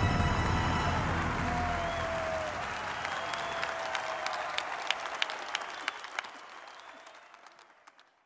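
Audience applause after a performance, with the music fading out in the first second; the clapping thins to scattered single claps and dies away near the end.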